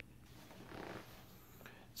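Near silence: room tone with a faint, brief handling sound about a second in.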